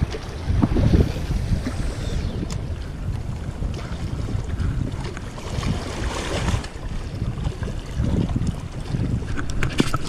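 Wind buffeting the microphone in gusts, over small waves washing against rock boulders.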